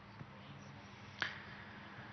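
Faint steady room hum, with a single short, sharp click a little over a second in.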